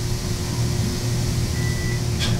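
Elevator car in motion: a steady low hum with an even rush of air noise, and a short high beep near the end.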